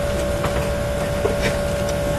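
Steady airliner cabin background noise: an even ventilation rush with a constant mid-pitched hum, and a couple of faint clicks.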